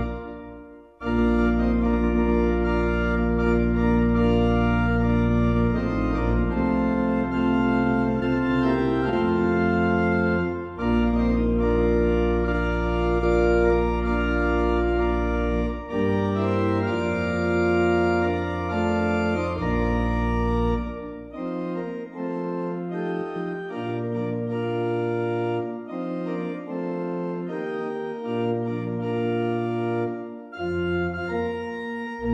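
Church organ playing a slow hymn in long held chords over deep pedal bass notes. There is a short break about a second in, and the pedal bass drops in and out through the second half.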